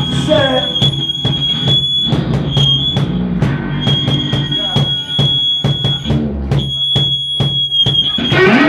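Live band playing: repeated drum hits and electric guitar, with a high, steady tone that cuts out and comes back several times over the music.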